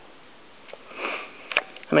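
A person sniffing once, briefly, about a second in, followed by a couple of light clicks.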